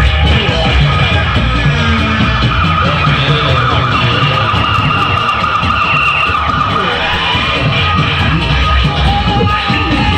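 Loud live music with a heavy, dense low beat and long held high melody notes through the middle, gliding in pitch near the end.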